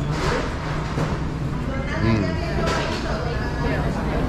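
Indistinct voices of other people talking, over a steady low hum.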